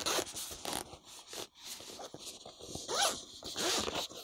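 Zipper on a padded fabric camera insert bag being unzipped around the lid in several short, rasping pulls, the loudest stretch near the end.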